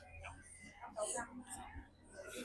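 Quiet, indistinct speech, low and murmured.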